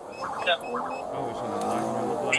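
Police car's engine revving up as the car accelerates through a turn in pursuit, heard from inside the cabin.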